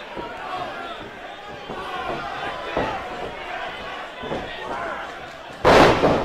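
Crowd noise in an arena. Near the end comes one loud slam as a wrestler is dropped onto the ring canvas by a suplex, with a short ring-out after it.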